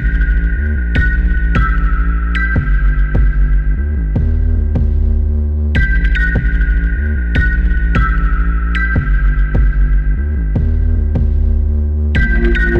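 Electronic dance music from a DJ set: a heavy, steady bass under sharp percussive hits and a held high tone that steps down in pitch, the phrase repeating about every six seconds.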